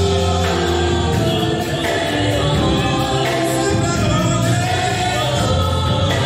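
Live gospel worship music: a group of singers singing together, choir-style, over a full band with a strong bass line.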